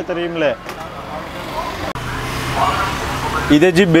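Steady street traffic noise, a low continuous rumble with no distinct events, between brief bits of a man's talk.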